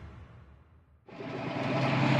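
Electric-guitar intro music fading out over the first second, then after a brief gap a tractor engine running steadily, heard from inside the cab.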